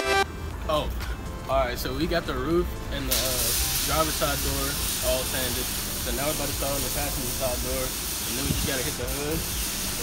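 A man talking, with a steady hiss that starts abruptly about three seconds in.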